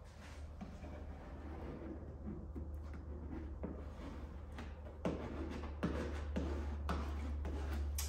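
Light rustling and soft taps of hands pressing and smoothing a vinyl overlay onto a car's plastic rear spoiler, with sharper clicks in the second half, over a steady low hum.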